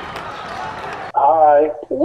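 An even rush of background noise for about a second, then cut off suddenly by a clear voice from a radio broadcast.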